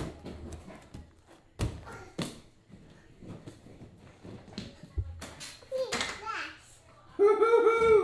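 Bare feet thudding as a child jumps from foam plyo boxes onto a slam ball and down onto a gym mat: several separate landing thumps. Near the end a child's high-pitched voice calls out loudly.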